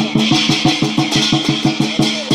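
Lion dance drum and cymbals playing a fast, steady beat, about five strokes a second, the cymbals keeping up a continuous clashing wash over the drum's ringing tone.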